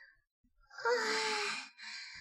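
A man's breathy, drawn-out moan, held about a second with a slightly falling pitch, followed by a short breath.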